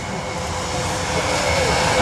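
Airbus A380's four jet engines during a low flying-display pass: a steady jet rumble with a held tone, growing slightly louder.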